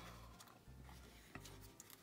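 Near silence: faint room hum with a couple of faint ticks.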